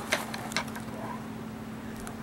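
Quiet room tone with a steady low hum, and a few faint clicks of a canvas bag being handled early on.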